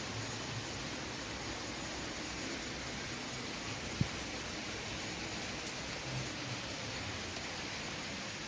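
Steady hiss of rain falling. A single brief low thump about halfway through.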